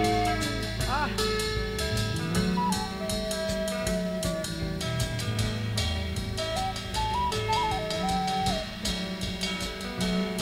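Psychedelic rock band playing an instrumental passage between vocal lines, with a drum kit keeping a steady beat with cymbal strokes over bass and guitars. A melody line steps and slides between notes.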